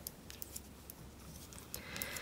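Faint, scattered clicks of metal knitting needles and the soft rustle of yarn as purl stitches are worked by hand.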